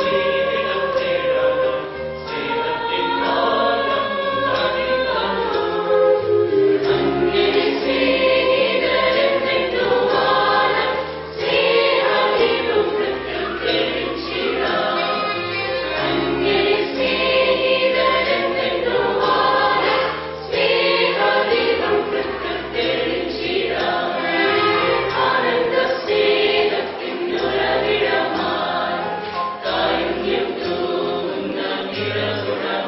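Mixed choir of men and women singing a Christmas carol together, in sustained sung phrases that rise and fall with the melody.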